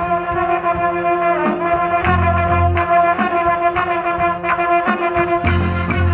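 High school marching band playing: brass holds sustained chords over a steady pulse of percussion strikes, with a deep bass note swelling in twice, about two seconds in and again near the end.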